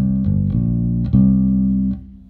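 Electric bass played through a Behringer Ultrabass BX4500H bass amplifier head with its Deep switch engaged, which adds low-end depth: about four plucked notes in a short line, damped suddenly near the end.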